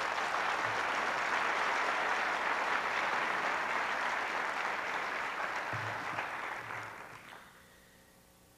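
Audience applauding, a steady spell of clapping that tapers off and dies away about seven seconds in.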